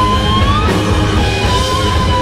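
Live southern rock band playing loud, with electric guitars over bass and drums; a sustained lead note holds and bends up in pitch about half a second in.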